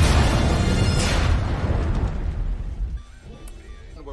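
Film soundtrack with dramatic music and a loud boom at the start, then a second blast about a second in, both dying away over about two seconds.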